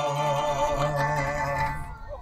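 Live band music: one long held note, with singing and guitar, that stops shortly before the end.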